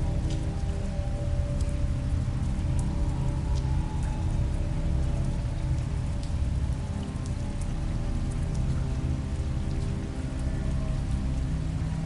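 Steady rain, with scattered faint drop ticks, under a dark ambient music drone with a heavy low rumble.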